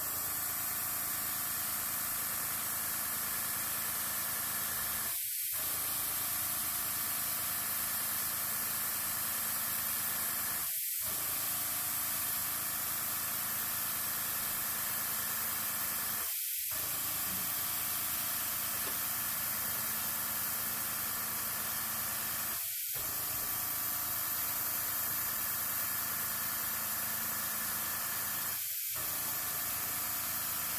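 Airbrush blowing a steady stream of compressed air across wet alcohol ink, a continuous even hiss that starts abruptly just before and never lets up.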